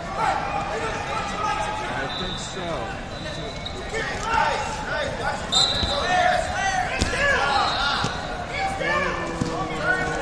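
Wrestling-hall din: wrestling shoes squeaking on the mats in many short chirps, under untranscribed voices of coaches and spectators, with one sharp thump about seven seconds in.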